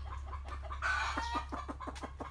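Chicken clucking: a short call about a second in, followed by a fast run of clucks.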